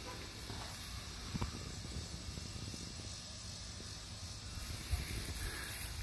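Faint, steady outdoor background hiss with no clear source in front of it, broken by a couple of light clicks, one about a second and a half in and one near five seconds.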